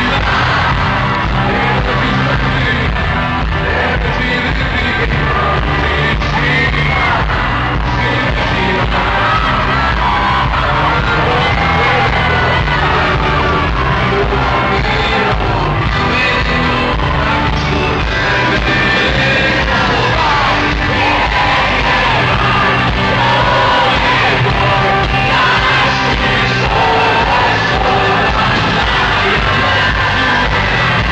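Rock band playing live in an arena, with a male lead vocalist singing over drums and guitars, recorded from within the audience, with crowd yelling mixed in.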